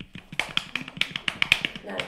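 Rapid, irregular sharp clicks and taps, about six a second, made by hand close to a microphone as a live sound effect.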